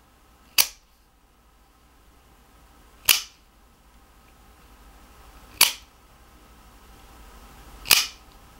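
Cheap double-action OTF automatic knife firing its blade out and snapping it back, worked by its thumb slider: four sharp spring-driven snaps about two and a half seconds apart.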